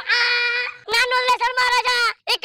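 A child's high voice calling out in a loud, chanted sing-song: one long held note, then several shorter phrases on the same pitch.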